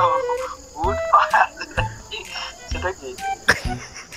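A man's voice talking on a speakerphone call, with a steady high chirring of crickets behind it throughout.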